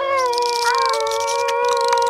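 A long drawn-out dog-like howl, held with a slight downward drift in pitch, with a few faint clicks over it.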